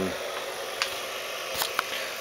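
Camera handling noise: a few light clicks as the handheld camera is swung round, over a steady faint background hum.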